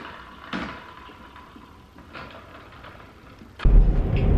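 A few light knocks and clicks in a quiet room, then, shortly before the end, a sudden switch to the loud, steady low rumble of a car cabin while driving.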